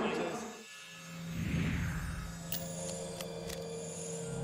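Logo-animation sound design: a steady low hum with a soft whoosh that glides downward about a second and a half in, followed by three sharp ticks about half a second apart.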